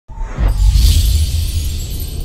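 Logo intro music: a deep bass rumble starts suddenly, and a bright high swish swells in and fades about a second in.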